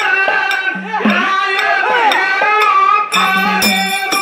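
Live folk devotional singing: a singer's voice bending through the melody over a sustained drone. About three seconds in, a rhythmic metallic percussion beat comes in at about three strikes a second.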